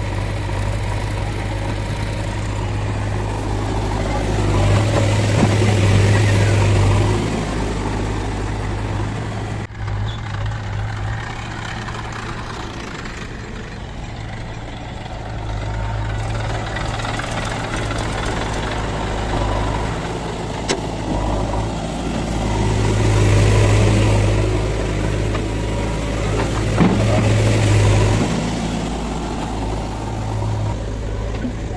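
Diesel engines of a JCB 3DX backhoe loader and Massey Ferguson tractors running with a steady low hum. The sound swells louder twice as the machines work, once about five seconds in and again past twenty seconds.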